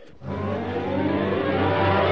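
Orchestral bridge music between scenes of a radio serial, entering after a short pause. A low held chord swells up, with more notes joining toward the end.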